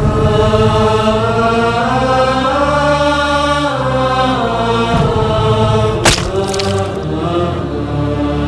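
Soundtrack of sustained vocal chanting over a steady low drone. The chant rises in pitch about two seconds in and falls back near four seconds, and a sharp crack comes about six seconds in.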